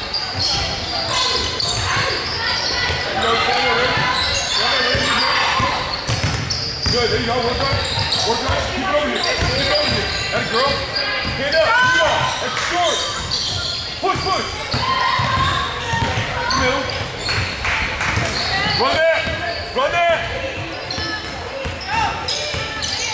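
Basketball game sounds echoing in a gymnasium: a ball bouncing on the hardwood floor, voices calling across the court, and a few short sneaker squeaks about halfway through and again near the end.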